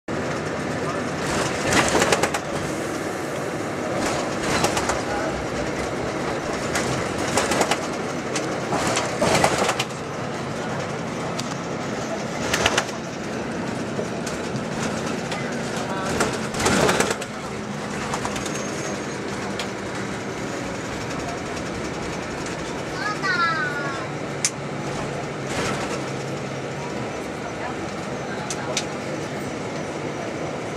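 Inside a moving bus: a steady rumble of engine and road with loud rattles and knocks every few seconds, and a few short chirping squeaks a little after the middle.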